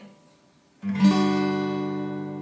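Acoustic guitar strummed once on a G major 7 chord a little under a second in, the chord left ringing and slowly fading.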